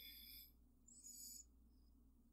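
Near silence: a low steady room hum, with two faint, brief high-pitched tones in the first second and a half.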